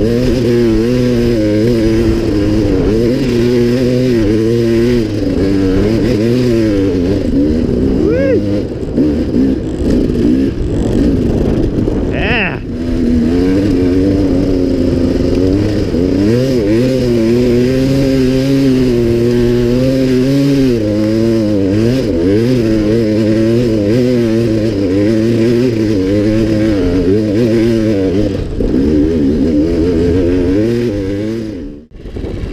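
Dirt bike engine working hard on a steep hill climb, its revs rising and falling constantly as the throttle is worked. The revs stumble and waver for a couple of seconds near the middle, with a short high squeak.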